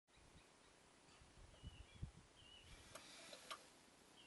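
Near silence, with a few faint, short bird chirps and some soft bumps and clicks. The scooter's engine is not running.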